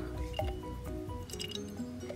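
Soft background music, a slow melody of single notes, over faint glugging and dripping of liquid baby formula being poured into a plastic baby bottle.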